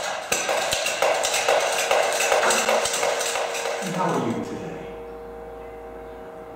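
Toy humming spinning top being pumped by hand, a fast rattling run of strokes for about four seconds, then spinning on with a steady hum.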